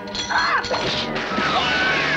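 Cartoon crash sound effect, with a brief cry in the first half second, over background music.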